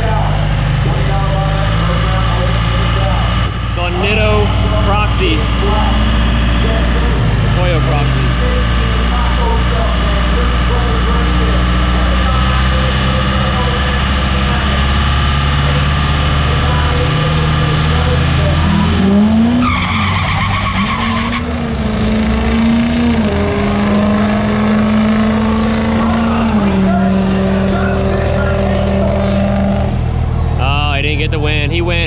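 Diesel truck engines at a drag-strip start line: a steady, loud diesel running close by while a box truck with a compound-turbo 4BT Cummins launches and pulls away down the track. About two-thirds of the way through, an engine note rises and then holds steady for several seconds.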